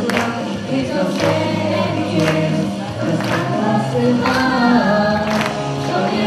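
A group of voices singing together into microphones, over a sharp beat that falls about once a second.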